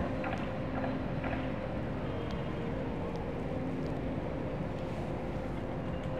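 Steady distant city traffic hum, an even wash of engine and road noise with a faint steady engine tone in it.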